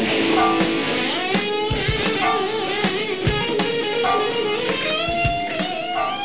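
Distorted electric guitar rock jam over drums, started on a count-in: held lead notes with wide, wavering vibrato, and a note bent upward near the end.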